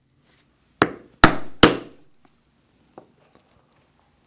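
Mallet striking a 3/16-inch round drive punch three times in quick succession, driving it through a thick cowhide belt strap, each blow ringing briefly. A faint single tap follows about a second later.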